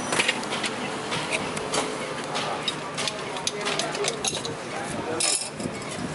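Stainless steel mugs and ceramic cups clinking and clattering as coffee is prepared: a string of sharp clinks, with a denser, louder cluster about five seconds in.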